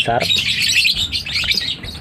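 Young lovebird chicks calling with a dense run of rapid, high chirps while they are handled and one is lifted from the tub.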